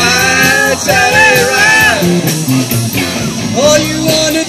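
Live rock band playing through a PA: two long sung notes over electric guitars, bass and drums, then the voices drop out about halfway and the stepping bass line comes forward.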